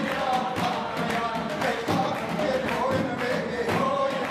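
Armenian folk song performed live: a man singing over a band with a steady drum beat.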